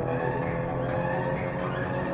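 A car engine running at a steady speed, a constant drone with no rise or fall.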